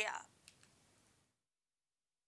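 A woman's voice finishing a word, two faint clicks about half a second in, then dead silence.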